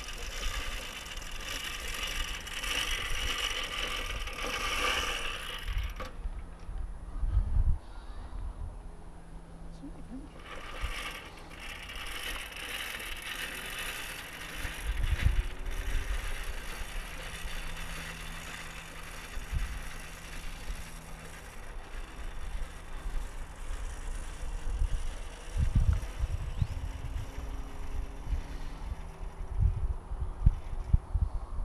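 Electric motor and propeller of a small radio-controlled glider running in two stretches, a high whine in the first six seconds and again from about ten to twenty seconds in. Wind thumps on the microphone now and then.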